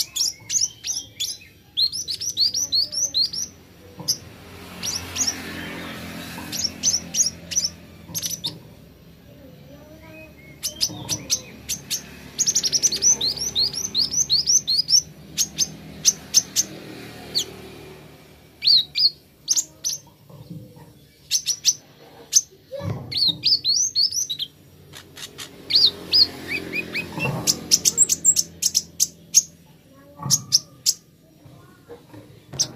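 Male Van Hasselt's sunbird (kolibri ninja) singing in a cage: quick runs of high, thin chirps, each sliding down in pitch, come in bursts of a second or two, with sharp clicks scattered between them.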